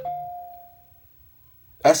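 A chime of two steady tones that fades out over about a second.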